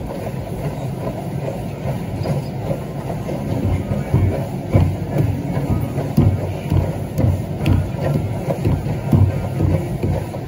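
Treadmill running with a low, steady rumble, and regular walking footfalls landing on the belt about every two-thirds of a second.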